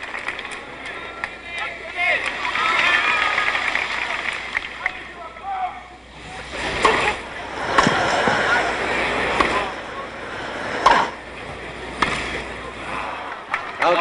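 Crowd in the stands murmuring and chattering, then a tennis rally starts about halfway through: several sharp pocks of the ball on the rackets, about a second or so apart, over the crowd's hush.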